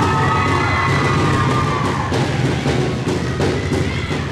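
Audience clapping and cheering, with a long high held sound over it for about the first two seconds.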